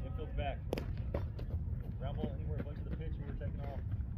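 One sharp crack of a metal baseball bat striking a pitched ball, about a second in, followed by a few fainter knocks, over a steady low rumble.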